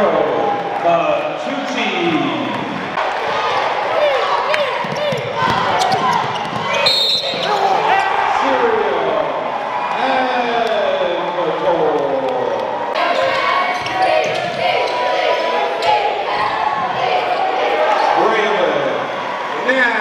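Basketball game in a gym: sneakers squeaking on the hardwood court and a ball dribbling, with many short squeaks, over a steady hum of crowd voices in the large hall.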